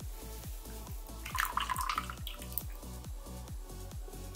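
Thin black carbon conductive ink being poured from one plastic cup into another, heard as a short run of liquid pouring and dripping from about a second in to about two and a half seconds in. Background music with a steady beat plays underneath.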